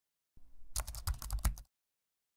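Typing sound effect: a rapid run of keyboard clicks over a low rumble, starting about a third of a second in and cutting off suddenly shortly before the end.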